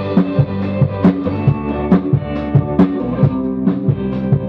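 Band playing a song live: a drum kit keeps a steady beat on bass and snare drum and cymbals, under sustained guitar chords.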